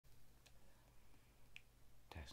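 Near silence: room tone with a low steady hum and two faint, short clicks, one about half a second in and one about a second and a half in.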